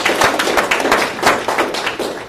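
Audience clapping: many hands at once in a dense patter, thinning out near the end.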